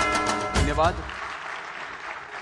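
Loud music with a heavy beat stops about half a second in, ending on a short rising sweep. Audience applause carries on after it.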